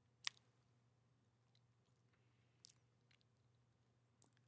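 Near silence: room tone, broken by one short click about a quarter second in and a fainter one a little past halfway.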